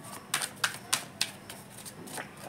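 A deck of tarot cards being shuffled by hand, overhand: a run of sharp card clicks about three a second, fainter in the second half.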